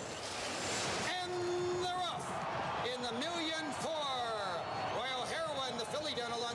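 Horse-racing starting gate springing open as the field breaks: a burst of clanging noise in the first second. Voices follow.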